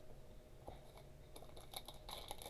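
Near silence with faint clicks and crinkles of a foil trading-card pack being picked up and handled, growing busier in the last half second.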